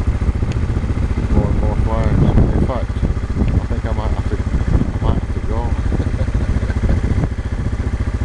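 People's voices talking over a steady, low, evenly pulsing engine hum.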